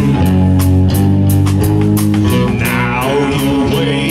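Live rock band playing heavy rock: distorted electric guitars and bass guitar holding low chords over a drum kit with steady cymbal strikes.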